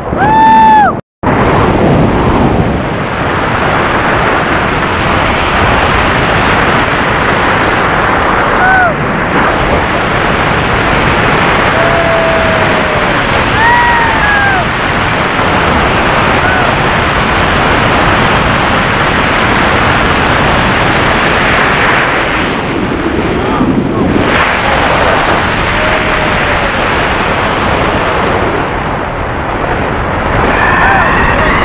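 Wind rushing over the camera microphone during a tandem skydive under an open parachute, a dense steady noise. A few short, high, rising-and-falling calls from a voice cut through it near the start and again around the middle.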